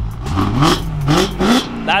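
A car engine blipped three times in quick succession, each rev rising in pitch and dropping back, with its valved exhaust set to closed, the quieter mode.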